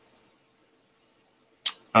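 A pause with only a faint steady hum, broken about one and a half seconds in by one brief sharp hiss of breath from the man, just before he goes on speaking.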